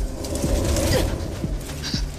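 Eerie film soundtrack: a low, steady drone with creaks and irregular sharp clicks over it, and a brief gliding sound about halfway through.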